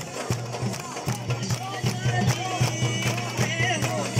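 Live Chitrali folk music: a drum beating a steady rhythm under a gliding melody from a Chitrali sitar and voice.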